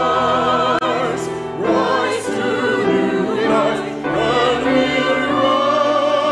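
Mixed church choir singing sacred music, holding long notes with vibrato that shift every second or so.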